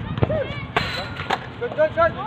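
Outdoor pickup basketball: players' short calls and shouts on the court, with a few sharp knocks of the basketball on the hard surface. There is a brief rush of noise about a second in.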